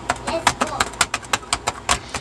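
A rapid, irregular run of sharp clicks or taps, about six or seven a second, over a steady low hum.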